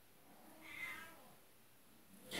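A house cat meowing once, faintly, about a second in.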